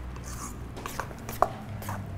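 A spoon stirring wet pumpkin cake batter in a stainless steel mixing bowl, with scattered light knocks and scrapes of the spoon on the steel. The sharpest knock comes about one and a half seconds in.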